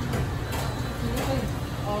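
Commercial kitchen background: a steady low rumble of running kitchen equipment, with faint voices over it.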